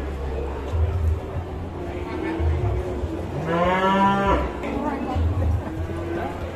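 A cow mooing once: a single call about a second long near the middle, rising in pitch at the start and then holding.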